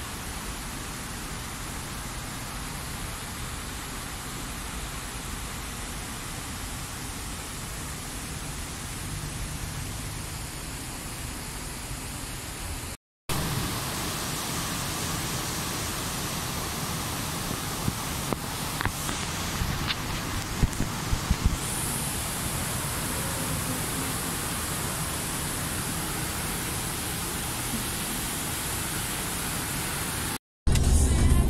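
Water rushing steadily over low concrete weirs in a river, an even hiss. It cuts off for a moment about 13 seconds in and comes back a little louder, with a few sharp clicks a few seconds later.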